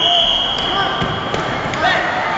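A single steady high-pitched signal tone, held for about a second and a half, over background voices and a few dull thuds.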